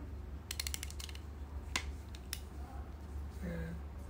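Aperture ring of a Nikon 80-200mm f/4.5 AI-S manual zoom lens turned through its click stops: a quick run of about eight clicks about half a second in, then two single clicks over the next second or so.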